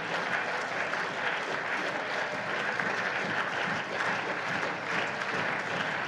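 Members of parliament applauding: dense, steady clapping.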